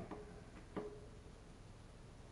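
Quiet room tone with one faint click about three-quarters of a second in: a hand tool on the bolts of a bicycle's front disc-brake caliper as they are checked for tightness.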